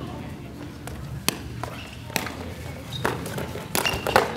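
A footbag being kicked back and forth in a net rally: sharp taps of shoes striking the small bag, about four or five, roughly a second apart, the last two close together near the end, with shoes moving on the court floor.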